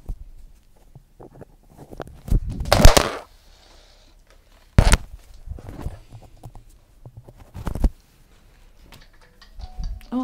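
A few loud scrapes and bumps of handling noise, the loudest a rustling scrape about two to three seconds in, with shorter knocks later as painting materials and the canvas are moved about near the microphone.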